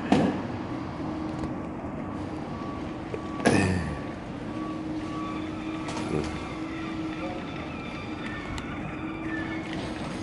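Steady hum of a motor vehicle engine running nearby over street background noise, with one brief louder falling sound about three and a half seconds in.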